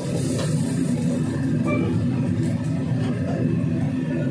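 Commercial gas wok burner running with a loud, steady low rumble under a wok of noodles, with a few faint clinks of a metal ladle against the wok.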